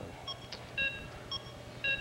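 Game-show bonus-round countdown clock: short electronic beeps about two a second, alternating between a lower and a higher tone, timing the contestant's ten seconds to solve the puzzle.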